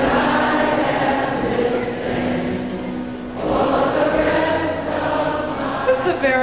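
Many voices singing together in long held notes over orchestral music, an audience sing-along, moving to new notes about halfway through.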